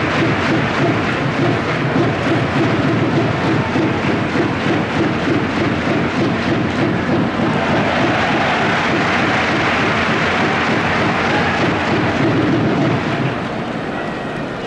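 Large crowd in a domed baseball stadium applauding and cheering in a loud, sustained, echoing din that eases slightly near the end.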